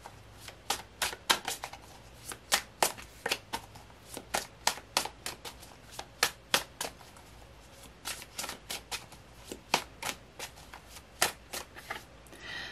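A tarot deck being shuffled by hand: a run of sharp, irregular card clicks and slaps, a few a second.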